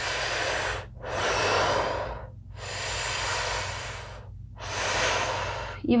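A woman breathing deeply and audibly, fully in and fully out, in a round of Wim Hof-style breathwork: long, even breaths of about a second and a half each, one after another with short pauses between.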